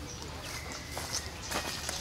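Macaques scuffling and rustling on dry sandy ground: scattered scrapes and scuffs that come thicker near the end, with a faint thin call in the background.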